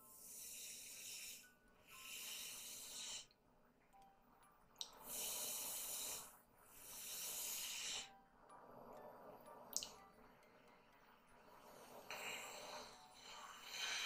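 A person's slow, noisy breathing close to a headset microphone, about seven breaths in a row, each lasting a second or so with short pauses between.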